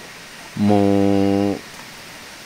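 A person's low voice holding a steady 'mmm' hum for about a second, a wordless sound between bursts of talk.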